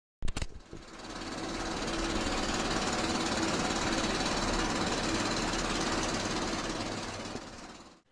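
Film-projector sound effect: a few sharp clicks, then a rapid, steady mechanical clatter with a faint running hum that fades out near the end.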